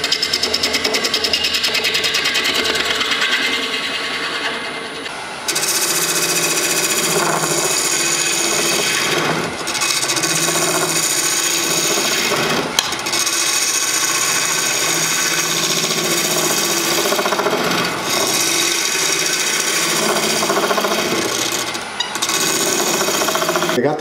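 Wood lathe spinning a resin-and-hardwood-block bowl blank while a hand-held turning tool cuts its bottom to make the chuck recess: a continuous scraping hiss of cutting, with a fast, even ticking for about the first five seconds before it settles into a steadier cut.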